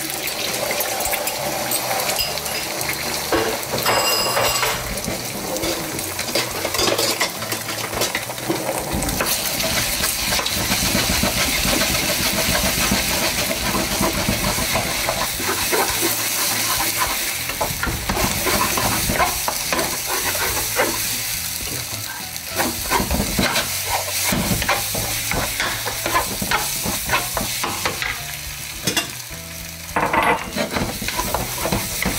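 Beaten eggs sizzling in hot oil in a wok, scrambled with a wooden spatula that scrapes and taps against the pan again and again.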